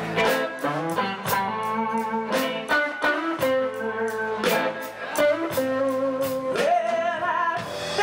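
Live blues-rock band playing a song: electric guitars, electric bass and a drum kit keeping a steady beat, with long bending notes over it.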